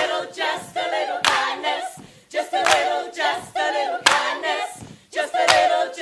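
A cast ensemble singing a cappella in a stage musical number, with a sharp percussive beat roughly every second and a half.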